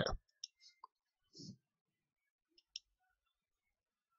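A few faint, short clicks from a computer mouse, spread out over a few seconds, with a soft low thump between them.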